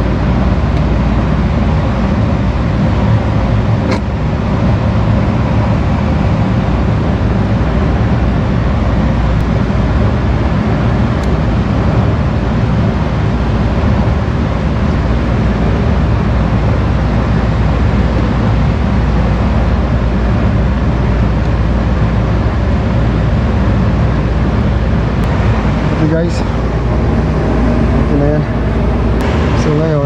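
Steady, loud drone of running air-conditioning machinery, heaviest in the deep bass, with a faint click about four seconds in.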